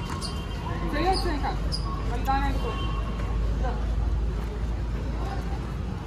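Several people's voices talking and calling out, over a steady low rumble.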